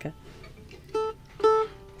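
Two plucked notes at the same pitch on an acoustic string instrument, about half a second apart, the second ringing on longer.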